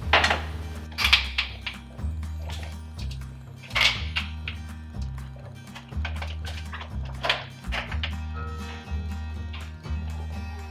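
Background music with a steady bass line, over which come a few sharp metal clicks and knocks from a stovetop aluminium pressure canner as its weight is taken off and its lid is loosened and lifted.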